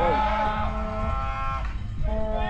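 A person's voice holding one long, drawn-out note for about a second and a half, then fading out near the end, over a steady low hum.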